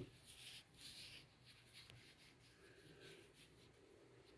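Near silence, with faint soft rubbing and handling noises from a hand turning a smooth stone. The noises are strongest in the first second or so and fade after.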